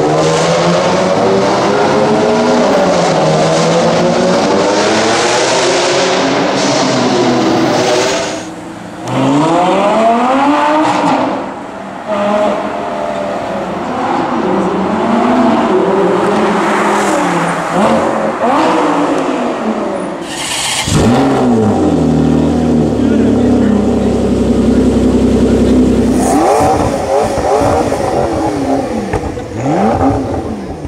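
Several supercar engines, among them a Lamborghini Gallardo's V10, revving hard and accelerating away, with repeated rising and falling sweeps in pitch. A short steady low engine note sits in the later part, then more revs near the end.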